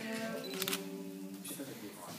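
Live acoustic folk song: held sung and strummed notes from voices, acoustic guitar and mandolin ringing between phrases, with one sharp click a little over half a second in.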